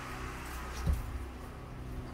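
Low steady mechanical hum with a single soft bump about a second in.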